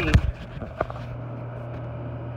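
Knocks and a click of hands and parts being handled inside the can column of a Dixie Narco 320 soda vending machine, over the machine's steady low hum. The knocks come right at the start, the click a little under a second in.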